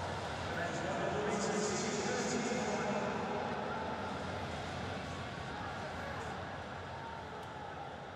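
Ambience of a large, near-empty athletics stadium: a steady wash of background noise with faint, indistinct speech in it.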